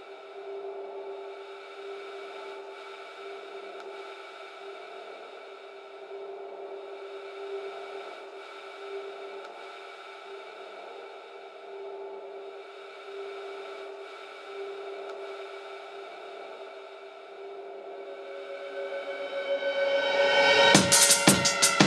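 Atmospheric synthesizer pad drone in the intro of an electronic drum and bass track: several sustained tones held steady over a faint hiss, swelling near the end.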